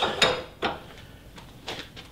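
A few short, light knocks and clicks, irregularly spaced and getting quieter, from a hand handling the head of a Bridgeport milling machine.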